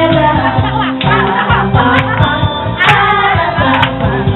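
Karaoke: a woman singing into a handheld microphone over a backing track with a steady beat, with a group of women singing along.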